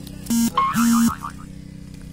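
The Kamco power reaper's engine drones steadily. Two loud beeps at one fixed pitch cut in about a third of a second in, a short one and then a longer one, with a wavering higher tone alongside the second.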